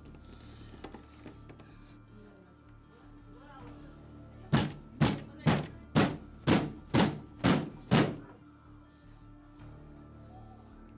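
Banging on a wooden door: eight heavy knocks, about two a second, starting about halfway through. A low background music bed runs underneath.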